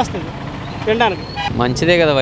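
A man's voice in short phrases over street traffic, with a vehicle engine idling steadily underneath.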